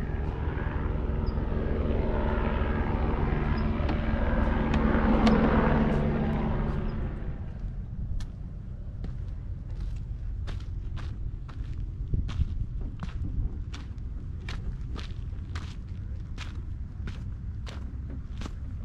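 Steady drone of a passing engine that swells about five seconds in and fades away by about eight seconds. Then footsteps, about two a second, as the walker goes down steps and along a dirt trail.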